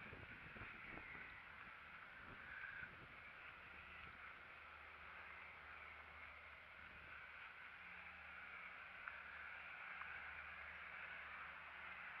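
Near silence: a faint steady hiss with a low hum underneath.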